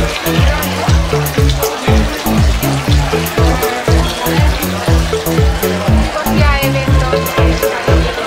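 Electronic dance music with a steady kick drum about twice a second, a bass line stepping between notes, and hi-hats ticking between the beats.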